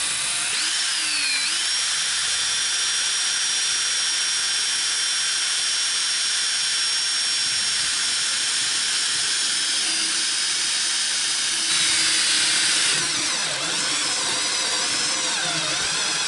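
Cordless drill turning a step drill bit through a golf cart's dashboard panel: a steady high motor whine that climbs at the start, dips about ten seconds in, gets louder briefly about twelve seconds in, and wavers near the end as the drill's battery runs nearly flat.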